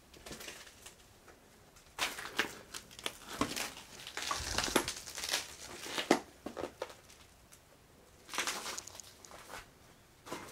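Footsteps crunching and crackling over broken glass and scattered paper on a debris-strewn floor, in irregular bursts: a long stretch through the middle and a shorter one near the end.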